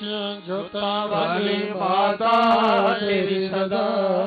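A voice chanting a devotional invocation in long, wavering melodic phrases over a steady held drone note.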